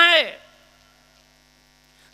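A man's amplified voice ends a drawn-out word in the first moment, then a pause holds only a faint, steady electrical hum.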